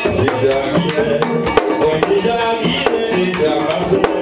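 Live Haitian Vodou ceremonial music: rope-tuned hand drums and a rattle keep a fast, steady rhythm, with a held melody line over them.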